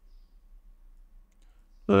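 A few faint computer mouse clicks over quiet room tone, with a man's voice starting just before the end.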